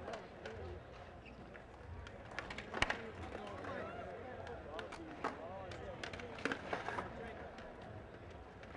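Skateboard on a hard indoor floor: wheels rolling and several sharp clacks of the board popping and landing, the loudest about three seconds in. Crowd chatter murmurs underneath.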